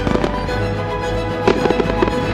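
Fireworks popping and crackling over background music with sustained notes: a couple of pops just after the start, then a quick burst of crackles in the second half.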